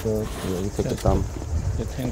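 A man's voice speaking quietly and indistinctly in the open air, with a low background rumble.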